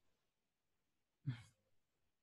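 Near silence: room tone, broken by one short, soft sound a little over a second in.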